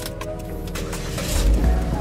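Chevrolet Spin's 1.5-litre four-cylinder petrol engine being started with the key: a short burst of starter cranking, then the engine catches about a second and a half in and settles into a low idle rumble.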